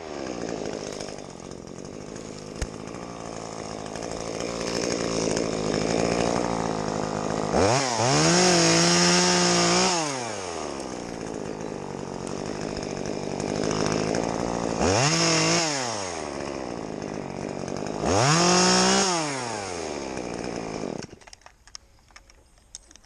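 Top-handle chainsaw running while cutting back branches. It revs up to full speed three times, each burst lasting one to two seconds, drops back between them, and cuts off shortly before the end.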